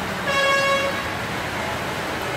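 A vehicle horn sounds once, a short steady toot of under a second, over the continuous noise of traffic driving through floodwater.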